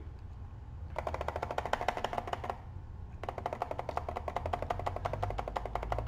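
Computer mouse scroll wheel clicking rapidly in two runs, one about a second in and a longer one from about three seconds on, as the stock chart is zoomed out.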